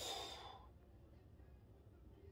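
A man's breathy sigh that fades away within about half a second, then near silence: room tone.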